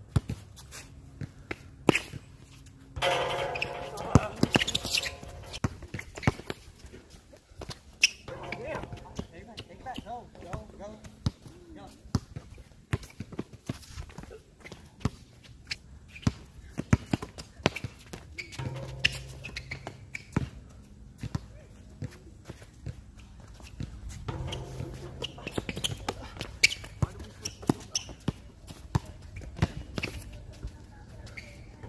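Basketball dribbled on a hard outdoor court: many sharp, irregular bounces throughout.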